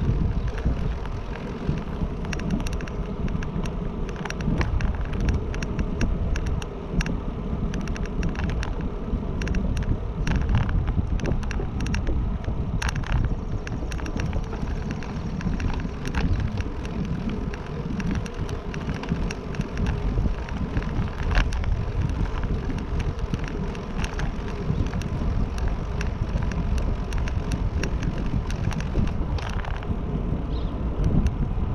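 Wind buffeting the microphone during a moving ride, a steady low rumble with many small clicks and rattles.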